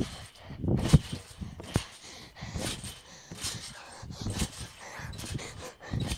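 Child bouncing on a garden trampoline: the mat gives a dull thump with each bounce, a little under a second apart.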